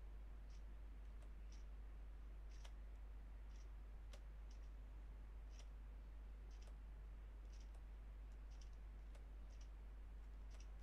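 Faint, regular clicks, about one a second, over a steady low electrical hum.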